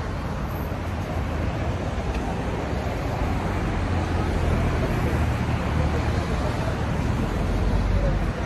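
Road traffic noise: a steady wash of passing cars with a deep rumble, growing slightly louder toward the end.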